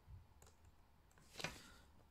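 A few faint clicks on a laptop's keys or touchpad, one about half a second in and a slightly louder quick cluster near the middle.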